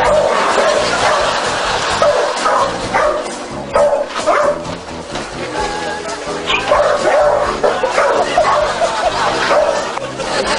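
A dog barking several times, with music playing underneath.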